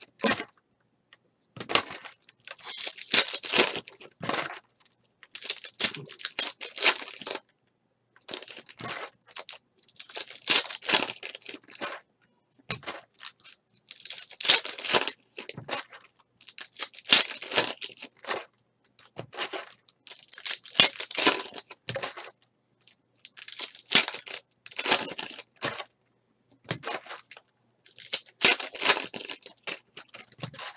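Foil trading-card pack wrappers crinkling and tearing as packs are ripped open and the cards handled, in short bursts every couple of seconds with silence between.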